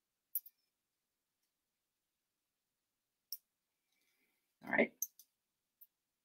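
A few small, sharp plastic clicks from a sewing machine's presser foot and elastic being handled: a pair early, one a little past halfway, and three more near the end. Just before the last clicks comes a short, louder voice sound.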